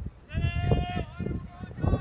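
A person shouting one long, drawn-out call at a steady pitch, then a shorter call, with other voices around it.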